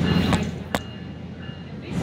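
Running noise of a SMART diesel multiple-unit commuter train heard from inside the car as it moves along the track: a steady low rumble that dips quieter in the middle, with two sharp clicks within the first second.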